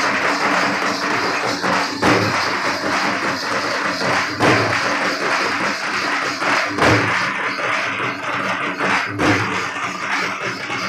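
Gond Dandar folk dance music: a dense, steady jingling and percussion with a heavy stroke about every two and a half seconds.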